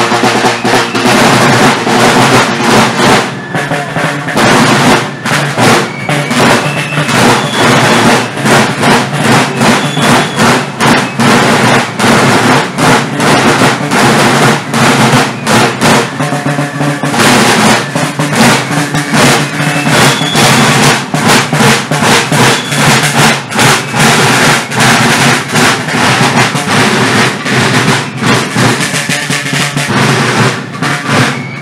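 Marching drum corps playing a continuous march beat with rolls on rope-tensioned military side drums.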